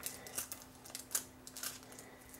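A few faint, short clicks over a faint steady low hum.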